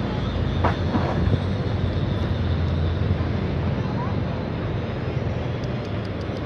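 Steady low rumble of outdoor background noise, with a couple of short clicks about a second in.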